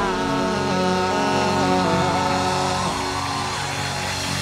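Live rock band with guitar and drums holding the song's final chord while a male singer sustains a long note over it; the voice drops away near the end, leaving the band ringing out.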